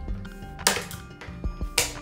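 Scissors snipping the plastic packaging of a kitchen gadget: two sharp, crisp cuts about a second apart, with a few dull knocks of handling, over steady background music.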